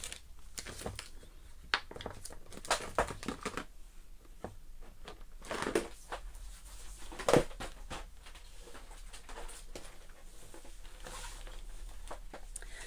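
Scattered light clicks, taps and brief paper rustles of craft supplies being handled and moved about on a desk, with a faint low hum underneath.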